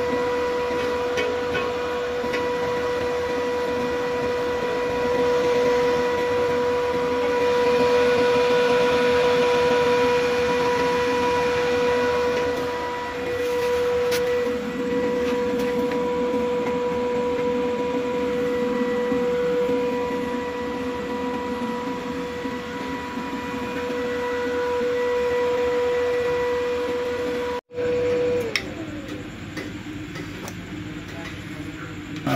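Home UPS inverter running with a steady high electrical hum. The hum cuts off with a click about two seconds before the end.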